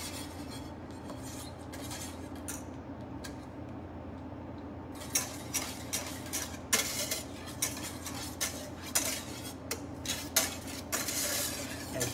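Wire whisk beating and scraping against a stainless steel saucepan as butter is whisked into a red wine beurre rouge, a stage of building the butter emulsion. Sparse, softer strokes for the first few seconds, then a quick run of clinks and scrapes from about five seconds in.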